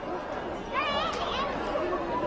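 A monk's voice calling out in a Buddhist monastic debate, over a low murmur of other voices.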